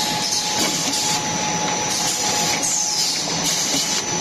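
Spiral paper-tube forming machine running: a steady mechanical whir with a constant whine, and short falling high-pitched squeals now and then, as kraft paper strips are wound onto the forming mandrel.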